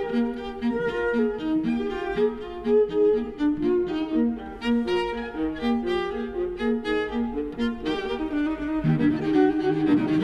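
A violin and a Stradivari cello playing a classical duet together, a lively passage of quick, short notes from both instruments.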